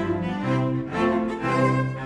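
Ensemble of seven cellos playing bowed, sustained chords, the harmony moving to new notes several times.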